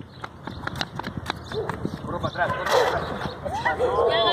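Quick running footsteps of children in sneakers slapping on a concrete court, about six sharp steps a second. Voices break in about halfway through.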